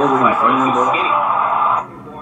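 Speech and dense background sound from the football highlight video being played back, with little treble. It cuts off suddenly near the end as the playback switches to another clip.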